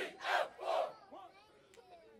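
A group of marching band members shouting together in unison: three short, loud shouts in quick succession within the first second, then scattered quieter voices.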